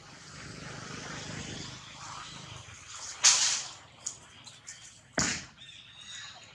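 Long-tailed macaques scuffling on grass and dry leaves: two sharp, noisy swishes about two seconds apart, the first about three seconds in and the louder, with a few faint clicks between them, over a low background hiss.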